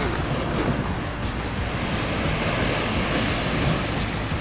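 A steady rushing noise with soft background music beneath it.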